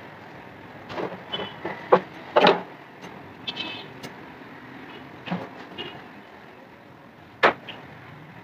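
Household floor-cleaning clatter: scattered sharp knocks, taps and light clinks of a broom and small objects being picked up from a tiled floor, the loudest a couple of seconds in. Steady background noise runs underneath.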